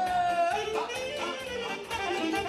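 Live Romanian party music from a band with keyboard and saxophone: a held melody note bends and then slides down to a lower line about halfway through, over a dance accompaniment.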